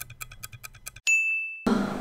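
Clock-ticking sound effect, fast and even at about seven ticks a second, ending about a second in with a single high bell ding that cuts off abruptly; then faint room tone.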